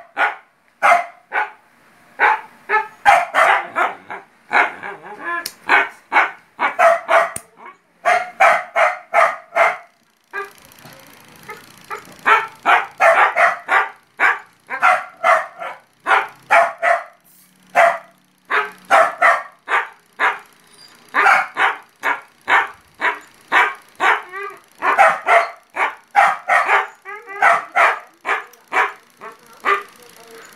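A dog barking over and over, in runs of quick barks about two to three a second, with a couple of short pauses.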